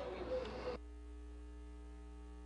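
Steady electrical mains hum in the audio feed. Faint background noise lies over it and cuts off suddenly under a second in, leaving only the hum.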